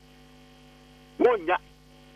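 Faint, steady electrical mains hum on the broadcast audio line, broken by one short spoken word a little past the middle.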